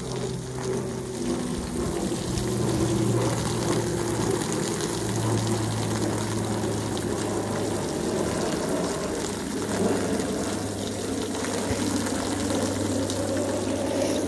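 Garden hose spraying water onto a soil and plant bed: a steady rush of water with a low hum underneath.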